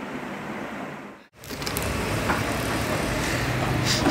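Steady rumbling background noise. It drops out abruptly just over a second in, then returns louder and holds steady.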